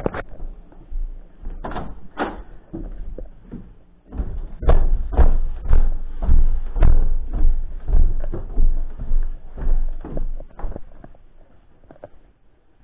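Footsteps walking down a flight of stairs: heavy thuds about two a second from about four seconds in, fading near the end, after lighter steps across the floor.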